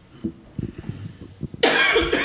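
A person coughing loudly close to a microphone near the end, after a run of soft low knocks.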